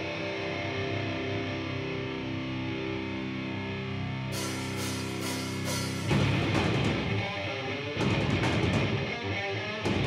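Heavy metal band playing live: electric guitar chords ring out steadily, cymbal hits come in about four seconds in, and the full band with drums, bass and distorted guitars kicks in about six seconds in, with a fresh accent about two seconds later.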